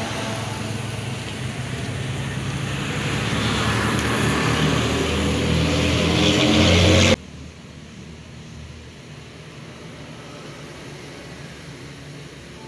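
A motor vehicle's engine growing steadily louder as it draws near, then cut off abruptly about seven seconds in. After the cut only a faint steady hiss remains.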